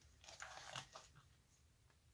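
Plastic binder page sleeves crinkling as a page of trading cards is turned: a short crackly rustle starting about a quarter second in and over by about one second.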